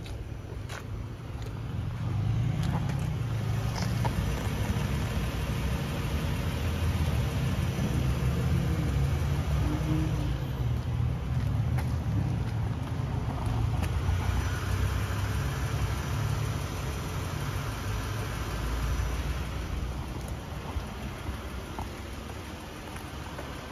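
Toyota Alphard's 3.0-litre 1MZ-FE V6 idling, heard from the exhaust at the rear of the van: a steady low rumble that grows louder about two seconds in and eases off near the end.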